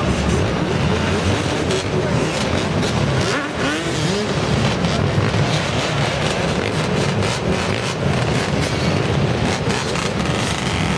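Several dirt bike and ATV engines running close by in a dense din, with revs rising and falling, most clearly about three to four seconds in, and scattered sharp pops.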